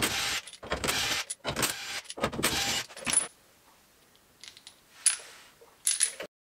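Metal rattling and clinking as nuts are worked off the steel studs of a wheel hub: about five short bursts in the first three seconds, then a few faint clinks near the end.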